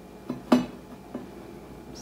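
A single sharp clink of a dish or plate about half a second in as biscuits are picked over on it, followed by a faint click about a second later.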